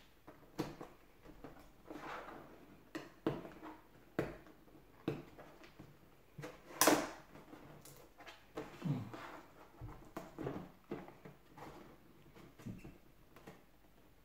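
Scissors snipping and scraping at the tape seals of a cardboard box while the box is handled: a scattered series of short clicks and rustles, the loudest about seven seconds in.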